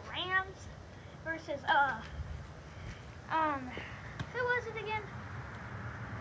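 A child's voice calling out in short, high-pitched, indistinct phrases, about four times.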